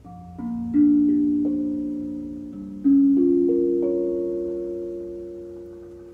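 A 14-inch Idiopan steel tongue drum, tuned by sliding magnets on its tongues, struck with a mallet. It plays two rising runs of about five notes each, the second starting about two and a half seconds in. The notes ring on and overlap, then fade slowly.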